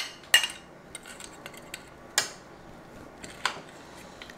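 A spoon clinking against a bowl and a skillet as diced bacon is scraped into the pan: a few sharp clinks, the loudest about a third of a second in, others around two seconds and three and a half seconds, with faint scrapes between.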